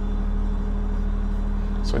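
Steady low hum with several held tones, unchanging in level: background machine or electrical hum in the room.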